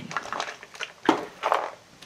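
Handling noise as a decorated hardcover junk journal is picked up and moved off a woven placemat: small clicks and rustles, loudest a sharp knock about a second in followed by a brief scraping rustle.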